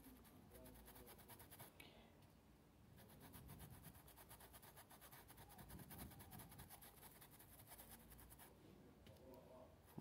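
Near silence, with the faint scratching of a paintbrush working paint into cloth.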